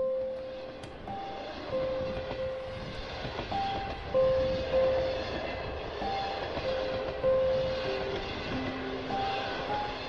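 A slow, sparse piano melody of single held notes, a new one every second or so, over a steady, noisy ambience.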